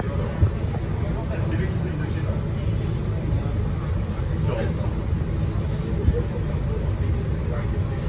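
Interior of a MAN NL323F A22 single-deck city bus standing in traffic, its engine idling with a steady low rumble. There are two brief knocks, about half a second in and about six seconds in.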